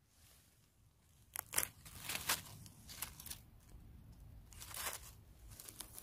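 Dry fallen leaves crackling and rustling under a hand as a mushroom is picked from the forest floor: near silence for about the first second and a half, then a few sharp crackles and softer rustling.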